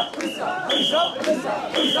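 Crowd of mikoshi bearers shouting a rhythmic carrying chant in unison, with short, shrill whistle blasts about once a second keeping time.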